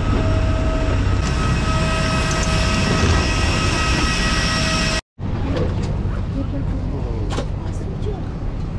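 Jet airliner's turbine engine running close by, a loud steady rumble with several steady high whining tones over it. The sound cuts off abruptly about five seconds in and comes back as a rougher steady roar without the clear whine.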